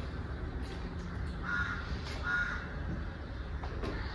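A bird calling twice in the background, two short calls less than a second apart near the middle, over a steady low hum.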